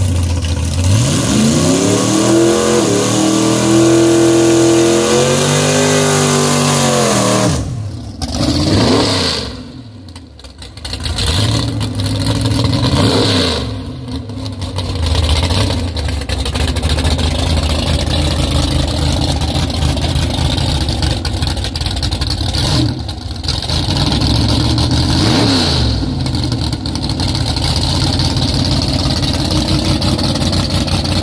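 Drag race car engines. In the first seven seconds one engine revs up, holds and then falls away. After that a race engine idles steadily, with short throttle blips about thirteen and twenty-five seconds in.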